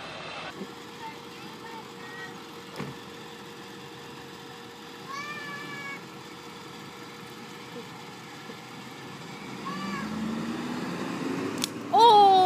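A toddler's short, high-pitched calls over the low sound of a school bus at the curb, whose engine rises as it pulls away near the end.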